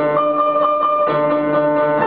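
Grand piano played six-hands by three pianists at one keyboard: repeated high notes over held lower notes, with a change of chord about halfway through.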